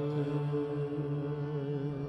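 Harmonium playing a sustained chord between sung lines of Sikh kirtan, steady held tones with no drum strokes.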